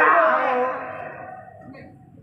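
A fighter's loud shout as a kick is thrown. It breaks out suddenly, then slides down in pitch and fades away over about a second and a half.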